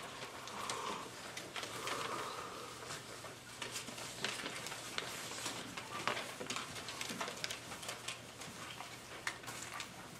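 Quiet audience-hall room tone: scattered small clicks and rustles from people shifting and handling papers, over a faint steady hum. A soft murmur of voices comes in the first few seconds.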